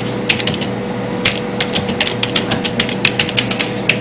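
Typing on a computer keyboard: an irregular clatter of key clicks, some in quick runs, over a steady low hum.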